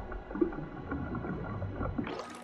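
Orange-coloured bathwater sloshing in a tub as a hand swishes through it, close to the microphone: low rumbling movement with small irregular splashes.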